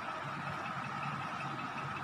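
Steady background hum and hiss with a faint constant high-pitched whine; no distinct pencil strokes stand out.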